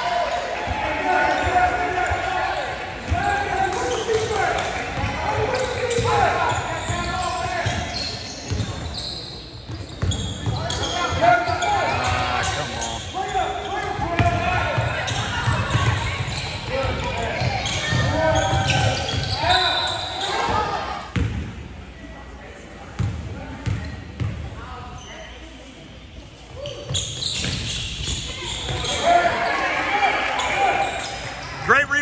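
Basketball bouncing on a hardwood gym floor during play, amid voices calling out, echoing in a large hall, with a quieter stretch about two-thirds of the way in.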